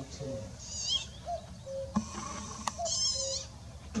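Common cuckoo calling its two-note "cuck-oo" twice, the second note lower than the first. Other small birds twitter high in the background.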